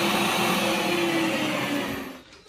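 Bosch ProPower electric meat grinder running empty, a steady motor hum with a whine, fading away near the end.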